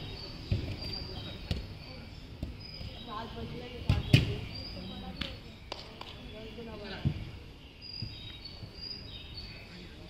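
A football being kicked: several dull thuds, the loudest about four seconds in, among the distant shouts and calls of players.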